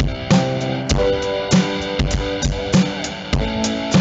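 Recorded rock song with guitar and drum kit, a steady beat with a drum hit a little under twice a second.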